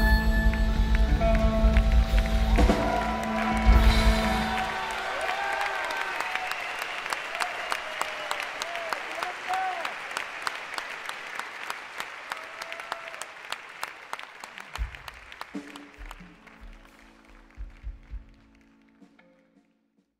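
A live rock band's final chord rings out during the first few seconds. Then a theatre audience claps and cheers, with a few whoops, and the applause fades out near the end. The sound is an audience taper's recording.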